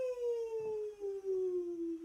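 A woman's voice holding one long 'wheee' that slides slowly and smoothly down in pitch, a sung glide for a sleigh going down a hill.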